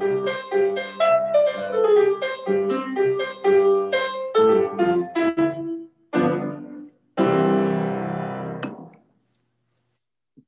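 Piano playing a short passage of quick, separate notes, which closes on two chords; the last is held and dies away, leaving silence near the end.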